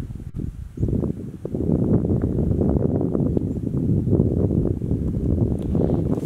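Low rumbling wind noise on the microphone, with rustling through moorland grass and heather. It grows louder about a second in.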